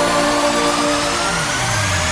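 Electronic dance track in a breakdown: held synth chords with a slowly rising sweep and no beat.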